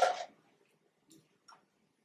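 A short clatter, then two faint ticks about a second later: hands working a laptop at a lectern.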